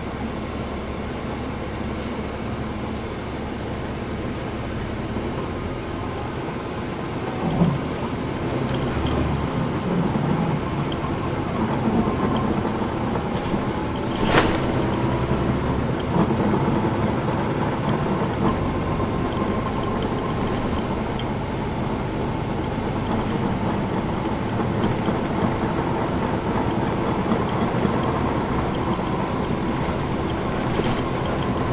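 Cabin sound of a 2010 NABI 40-foot suburban transit bus underway, its Cummins ISL9 inline-six diesel running under load with tyre and road noise as the bus gathers speed, growing louder about seven seconds in. A single sharp click or knock comes about halfway through.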